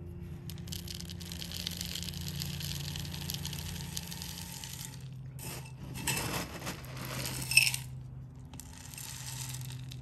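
Granular potting mix trickling and rattling from a metal scoop into a plastic pot. About six seconds in comes a louder gritty rattle that ends in a sharp clink, then a short pause before the trickling resumes, over a low steady hum.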